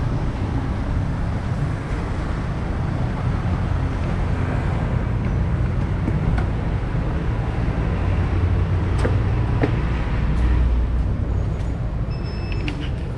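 Steady low rumbling street noise with a few light clicks in the second half.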